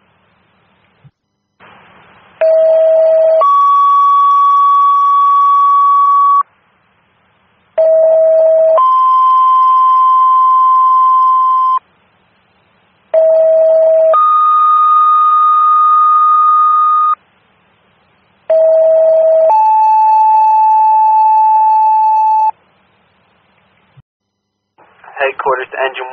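Fire dispatch two-tone alert tones over a scanner radio: four sets, each a short lower tone of about a second stepping up to a higher tone held about three seconds, with the higher tone changing pitch from set to set. They are the paging tones that alert the companies about to be dispatched.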